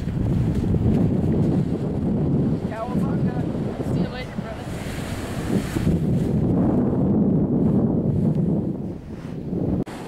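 Wind buffeting the camera microphone with a steady rumble over ocean surf. There are brief faint shouted voices around three and four seconds in.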